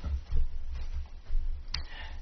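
Low steady hum with a few faint clicks, one of them near the end; no speech.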